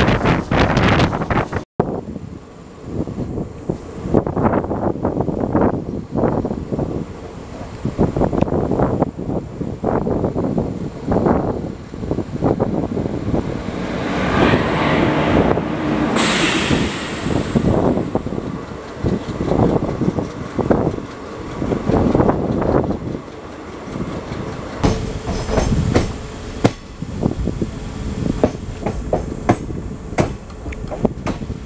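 Passenger coach wheels clattering over rail joints and points, heard through the open window of a moving express train, with a busy, uneven clickety-clack. Around the middle the noise swells with a hiss as the train runs alongside parked locomotives.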